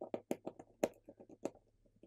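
Precision Phillips screwdriver turning out tiny screws from a smartphone's internal cover: a quick run of small clicks with a few sharper ones, thinning out near the end.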